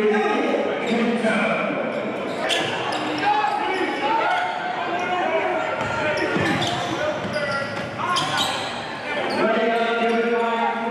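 Live basketball game sound in a large gym: players and spectators shouting and talking, echoing in the hall, with a few sharp knocks of the ball bouncing on the hardwood court.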